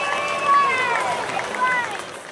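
A high-pitched voice calling out in a few short, rising and falling phrases over outdoor background noise.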